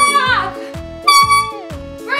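Handheld air horn blasting twice: one blast ends, sagging in pitch, just after the start, and a second short blast of about half a second comes about a second in. Background music with a steady beat runs underneath.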